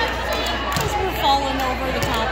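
Crowd chatter in a large gym hall: several voices of players and spectators talking over one another between rallies.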